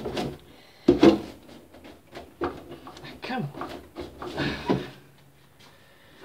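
Tight plastic back cover of a CRT television being pried and pulled loose: a series of sharp plastic clicks and knocks from the housing and its clips, the loudest about a second in.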